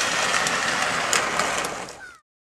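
Plastic sled sliding fast over packed snow: a steady scraping hiss with a few small clicks, fading away near the end.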